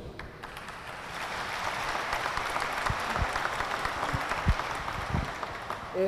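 Audience applauding, building up about a second in and thinning out near the end.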